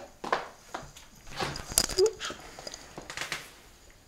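Irregular clicks and knocks of a person moving about a small room and sitting down on a bench, the loudest cluster just before two seconds in, with a brief sound of voice around two seconds.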